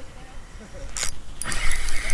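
Spinning reel being cranked by hand on a fishing rod. There is a sharp noise about a second in, then a louder steady whir with rapid clicks.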